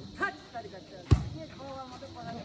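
A volleyball being hit, one sharp smack about a second in, amid the scattered voices and shouts of players and spectators.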